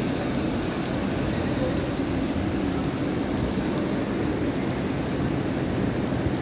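Small fountain jets splashing into a shallow pool, fading after about two seconds, over a steady low rumble.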